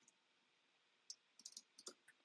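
Near silence, then a few faint, quick clicks of a computer mouse and keyboard in the second half.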